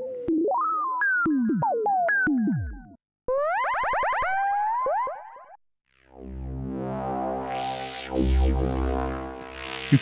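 Built-in synth effects of a Korg KAOSS Replay played from its XY touchpad. First the Electric Perc preset gives struck, pitched notes that step and slide downward. Next comes a run of notes that glide upward and then hold, and after a brief gap the Kaoss Drone preset gives a thick, low, sustained drone that swells and fades.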